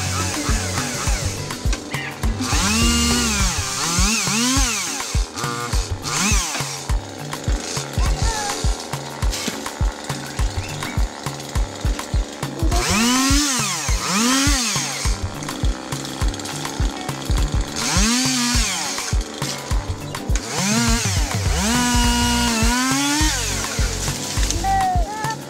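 Chainsaw revving in short bursts, its pitch rising and falling again and again, then held high for about a second near the end while cutting tree branches. Background music with a steady beat plays underneath.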